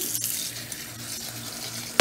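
Kitchen tap running, its stream falling onto long-grain rice in a perforated steamer basket in a stainless steel sink as the rice is rinsed. The flow gets a little quieter about half a second in.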